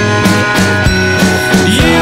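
Rock band recording playing at full level, with a regular drum beat under sustained guitar and other pitched parts.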